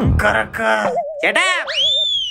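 Cartoon comedy sound effects: a short voiced exclamation at the start, then a wobbling, boing-like tone, and near the end a high whistle that rises and then falls as a blackboard duster is thrown.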